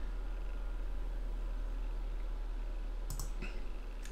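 A single mouse click about three seconds in, clicking through a Windows setup screen, over a steady low hum.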